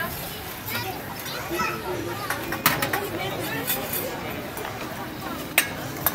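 Background chatter of many voices, children's among them, filling a busy buffet hall, with a few sharp clinks of dishes and serving utensils.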